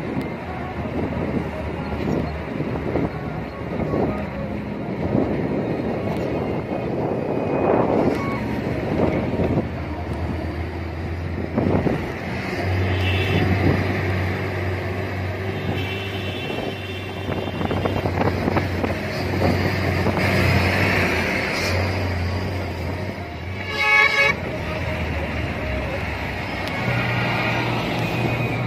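Truck horns sounding several times over the steady drone of truck engines on the road. The loudest is a short, sharp horn blast near the end.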